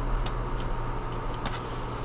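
A steady low rumble and hum, with a faint click of paper bills being handled about one and a half seconds in.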